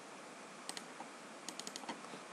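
Short, sharp clicks of a computer keyboard and mouse: a couple of single clicks, then a quick run of five or six near the end, over a steady hiss.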